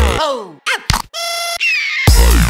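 A breakbeat track in a short breakdown. The drums and bass cut out just after the start, leaving downward-sliding synth sweeps. Then come a couple of short chopped stabs, a held synth tone and a high gliding tone near the end.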